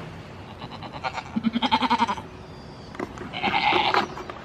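A goat bleating twice at close range: a quavering bleat of about a second starting a second in, and a second, harsher bleat near the end.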